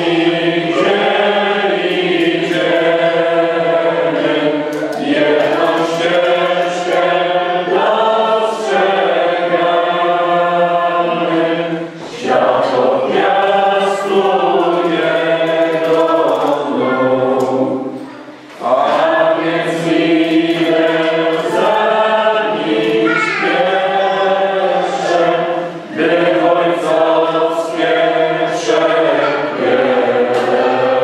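A choir singing slow, long-held notes in long phrases, with brief pauses between them.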